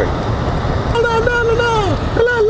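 Steady road and engine rumble inside a moving truck's cab. About a second in, a voice starts holding a long, slightly wavering note that bends down in pitch near the end.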